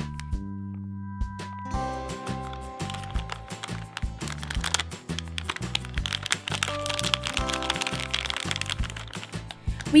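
Crinkling and crackling of a foil blind bag being handled and opened, starting about two seconds in, over light background music.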